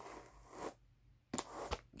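Howard Brush No. 10 hand carder's wire teeth brushing lightly across wool fleece on a second carder: a soft scratchy rustle for about the first half-second, then two light knocks about a second and a half in.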